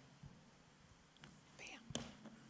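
Near silence: room tone, with a faint rustle and a single click near the end.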